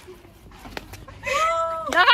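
A young woman's high-pitched, drawn-out whining cry, meow-like, held for most of a second about halfway in, then a louder squeal that swoops up and down at the very end.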